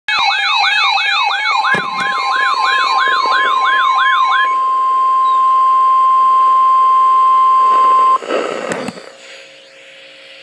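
Several NOAA weather alert radios sounding their alarms together for a severe thunderstorm warning: a loud warbling siren, rising and falling about two and a half times a second, layered with pulsed beeps, gives way after about four and a half seconds to one steady 1050 Hz warning tone. The tone cuts off about eight seconds in, followed by a couple of clicks.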